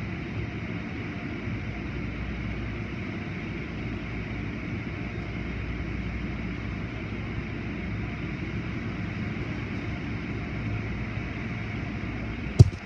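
Automatic car wash running, heard from inside the car's cabin: a steady noise of spinning soft-cloth strips and water sweeping over the body, over a low machinery hum.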